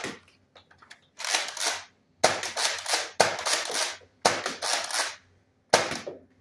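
Nerf Roblox Viper Strike spring-powered dart blaster firing six shots, about one a second. Each is a sharp pop with a short noisy tail.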